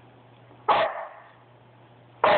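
A dog barks once, a single loud bark about two-thirds of a second in.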